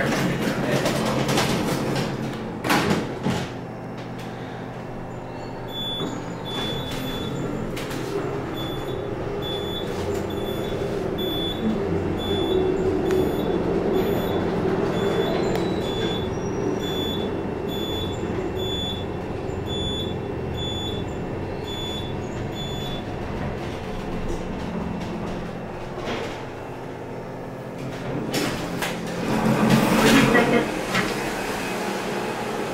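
Elevator doors sliding shut with a clatter, then the car running with a steady hum. A short high beep sounds about once a second for much of the ride, and the doors slide open near the end.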